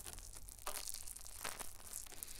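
A wet spoolie (mascara brush) rubbing and scratching inside the silicone ear of a 3Dio binaural microphone, making close crackly brushing with stronger strokes about two-thirds of a second and a second and a half in.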